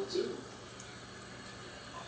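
Clamato tomato-clam juice poured from a plastic bottle into a glass, a faint steady pour with a few small ticks.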